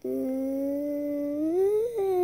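A girl's voice singing a long, steady held note that slides up in pitch about a second and a half in.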